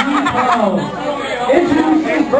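Several people talking, their voices overlapping into chatter too indistinct to make out.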